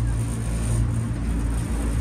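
Amphibious duck-tour boat's engine running steadily while afloat, a low hum heard from inside the open-sided passenger cabin.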